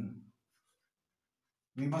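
Faint scratching of chalk on a blackboard as a word is written, in a short, almost silent pause between a man's spoken words.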